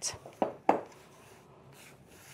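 Two short soft knocks and light rustling as a bunch of fresh cilantro is handled and set down on the counter, followed by faint room tone.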